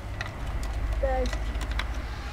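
A cat gives a short meow about a second in, among a few light clicks over a low rumble.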